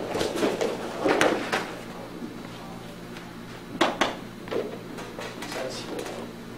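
Two grapplers dropping and rolling onto a foam mat, with thuds and a rustle of gi fabric. The heaviest thud comes about a second in, and two sharp slaps come just before four seconds.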